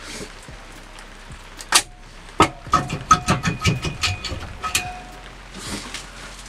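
Metal engine parts clinking and knocking as a camshaft and cylinder-head parts are handled: two separate knocks, then a quick run of about a dozen sharp clinks, some ringing briefly like struck steel.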